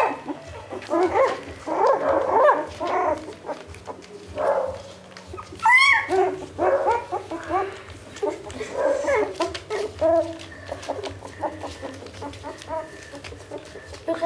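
A litter of three-week-old beagle puppies crying out in a run of short, high-pitched calls, one after another, with the loudest call arching up and down about six seconds in. The calls grow fewer and fainter near the end.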